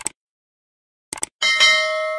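Subscribe-button animation sound effects: two quick clicks at the start and a few more clicks about a second in, then a notification-bell ding that rings on steadily.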